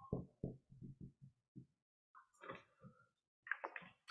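Near silence in a small room: faint, short murmured voice sounds and a few soft noises during a pause in speech.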